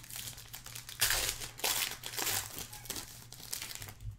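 Foil trading-card pack wrapper crinkling in several short bursts as it is handled and torn open.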